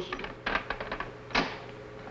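A few light clicks and knocks in irregular succession, the sharpest about a second and a half in.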